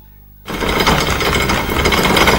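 A sudden loud, rapid rattling clatter that breaks in about half a second in, after a brief quiet, and keeps going.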